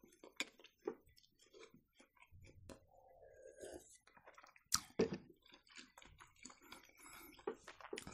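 Faint eating sounds: chewing of fried baursak dough and a sip from a cup, with small scattered mouth clicks and two sharper clicks near the middle.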